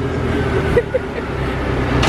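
Tow truck's engine running with a steady low hum while it carries off a car that it has lifted, amid airport kerbside traffic noise.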